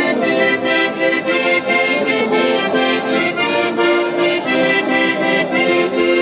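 Accordion playing a traditional Andean carnival tune, held chords over a steady, even beat.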